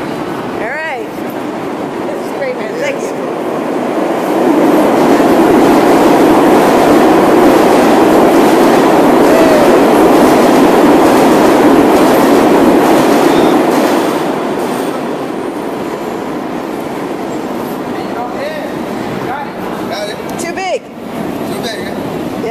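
Subway train passing through the station: its rumble swells about four seconds in, stays loud for about ten seconds, then fades back to the station's steady background noise.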